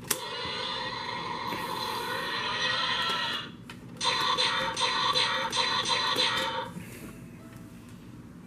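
Electronic dinosaur roar sound effects played through the small built-in speaker of an Indominus Rex action figure, triggered with a click: one lasting about three seconds, then a second from about four seconds in, stopping shortly before seven seconds.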